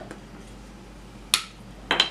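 Two sharp clicks of hard plastic knock-off Duplo-style toy pieces knocking together, about half a second apart, the second with a short ring.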